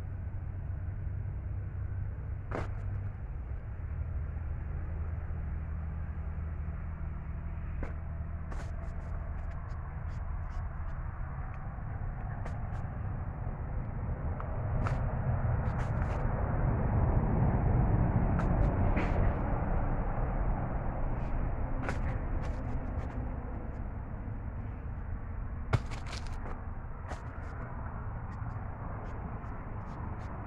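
Rustling of a woven plastic sack with scattered clicks and knocks as pequi fruits are handled in it, over a steady low rumble. The rustling swells for several seconds around the middle.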